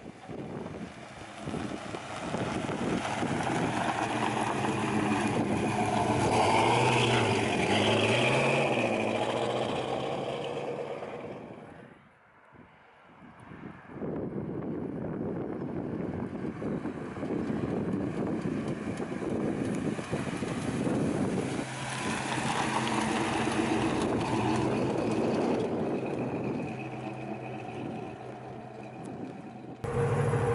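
1970 Pontiac GTO's 400 cubic-inch (6.6-litre) V8 with Edelbrock intake and carb and Flowmaster exhaust, heard as the car drives past; the engine note rises and bends in pitch as it goes by. The sound drops almost to nothing about twelve seconds in, then the engine is heard again, rising once more and fading near the end as the car pulls away.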